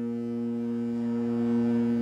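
Cruise ship's horn sounding one long, steady blast.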